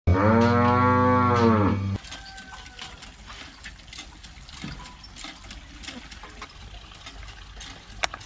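A cow moos once, one long call of about two seconds whose pitch rises and falls. Then light scattered clicks and knocks over a quiet background.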